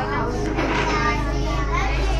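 Young children's voices, talking, over a steady background music track.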